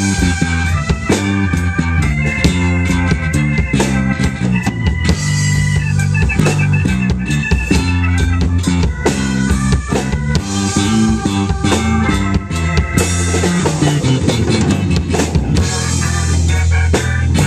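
Rock band playing an instrumental passage live: Rickenbacker 4003 electric bass, organ and a Tama drum kit, with held organ chords over a driving bass line and steady drum strikes.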